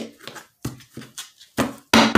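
A deck of tarot cards being cut and handled: an irregular run of short taps and clicks, the loudest about one and a half seconds in.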